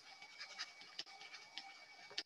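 Faint scratching of a stylus writing on a tablet, with a few small ticks as the pen tip strokes and taps the surface.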